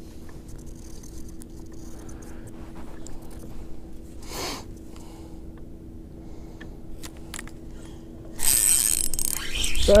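Spinning reel cranked fast from about eight and a half seconds in, a loud whirring rattle of its gears as a bass that has just bitten is reeled in. Before that, only a faint steady hum.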